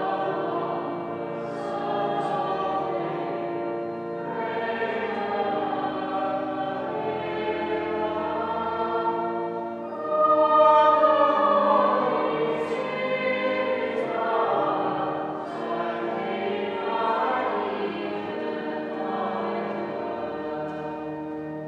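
Choir singing a slow sacred piece in long held chords, swelling to its loudest about halfway through.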